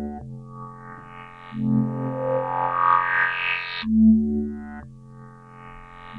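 Synth bass line from Ableton's Operator played through the Moog MF-105S MuRF filter-bank plugin: sustained low notes changing about every second, while the MuRF's animated pattern steps through its fixed filters so the upper tones swell and shift in brightness.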